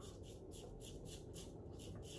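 Safety razor with a Feather blade scraping stubble off a lathered neck in short, quick strokes, about five a second, faint and scratchy.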